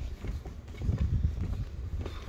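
Footsteps on the wooden plank deck of a timber footbridge, an irregular run of dull hollow steps, over a low rumble of wind on the microphone.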